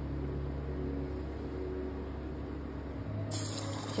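Steady low hum, then about three seconds in a hiss sets in as a potato-stuffed bread roll is lowered into hot oil in a wok and starts to sizzle.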